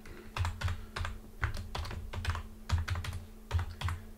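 Typing on a computer keyboard: an uneven run of quick key clicks as a word is typed out.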